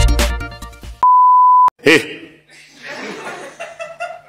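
Electronic music ends about a second in, cut off by a single loud, steady, pure beep lasting about two-thirds of a second. After it comes a brief voice sound, then faint noise with a low hum.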